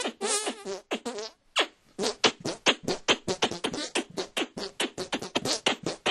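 Hand music (manualism): air squeezed from cupped hands into pitched squelching notes, in two parts. First come a few held melody notes, then a short break, then a fast, even run of short staccato squeezes, about seven a second.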